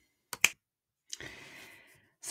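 Two sharp clicks in quick succession, followed about a second in by a softer click and a short fading hiss.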